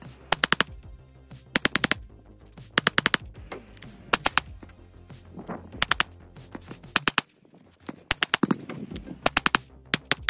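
Sig P365X Macro compensated 9mm pistol fired in quick strings of three to five shots. There are about seven short strings, with pauses of a second or so between them.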